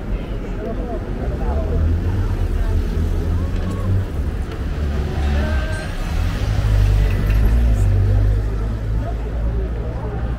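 Busy street ambience: car traffic passing with a steady low rumble that swells near the middle, and passersby talking.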